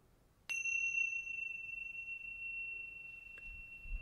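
A small hand-held meditation chime struck once about half a second in. It rings with a single clear high tone that slowly fades, marking the end of a period of silent meditation.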